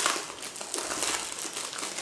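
Thin plastic wrapping crinkling as it is peeled and pulled off a rolled-up gaming mouse pad, an irregular run of crackles and rustles.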